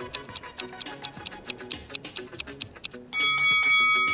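A fast, even clock-style ticking over light background music, the countdown of a timer running down. About three seconds in it gives way to a sudden, louder, steady ringing tone that marks the time running out.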